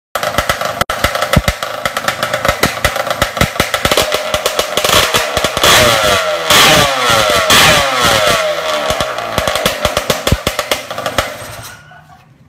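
Modified race-built motorcycle engine running and being revved hard in repeated throttle blips. The pitch climbs and falls several times around the middle, then the engine drops back and dies away near the end.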